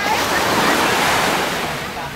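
Small surf breaking and washing up the sand, a rushing hiss that swells in the first second and fades away toward the end.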